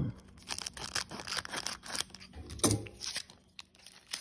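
Foil Pokémon booster pack crinkling and crackling as it is handled and torn open by hand, in a series of quick irregular crackles.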